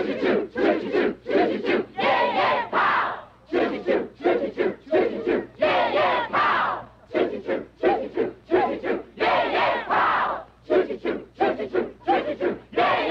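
A group of young people chanting and shouting in unison during a group exercise, in quick rhythmic bursts of about two to three shouts a second.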